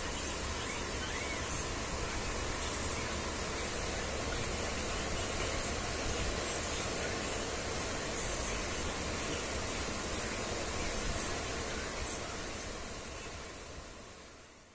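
Steady rushing background noise, with faint short high ticks every second or two. It fades near the end.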